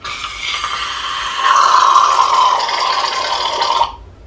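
Aerosol whipped-cream can sprayed straight into the mouth in one long continuous hiss. It grows louder about a second and a half in and cuts off just before the end, as the can is emptied.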